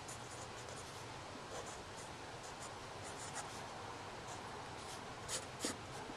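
Micron fineliner pen scratching across paper in short strokes as words are handwritten, with two louder, quicker strokes near the end as a word is underlined twice.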